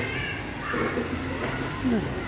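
Stray cat meowing, several short meows with a loud falling meow near the end.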